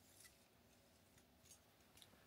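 Near silence, with a few faint clicks from digital calipers being handled.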